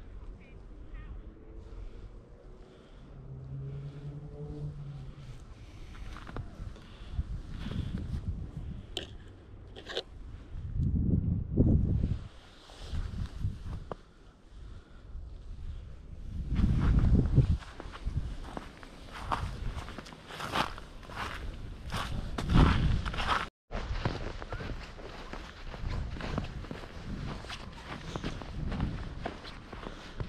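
Footsteps crunching on a trodden, snow-covered path: an irregular run of crunches, sparse at first and denser and louder in the second half, with a few low rumbles mixed in.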